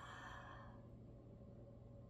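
A woman's long, breathy exhale, a sigh while holding a yoga stretch. It fades out within the first second, leaving near silence.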